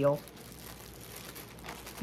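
Faint crinkling of plastic packaging being handled, quiet and irregular, after a last spoken word.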